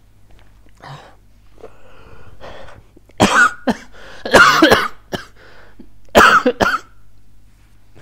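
A man ill with palytoxin poisoning symptoms breathing heavily, then coughing loudly in three fits from about three seconds in.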